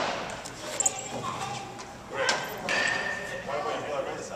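Indistinct voices talking in a large, echoing indoor room, with a faint knock about a second in.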